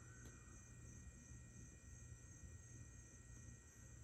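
Near silence, with a faint steady low hum.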